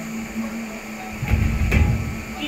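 Dull low thumps with a rumble in the second half, including two short knocks about half a second apart.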